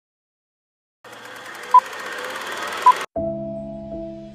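Channel logo sting: a static-like hiss with two short, loud beeps, cut off abruptly. Just after three seconds the song's intro begins with a held synth chord.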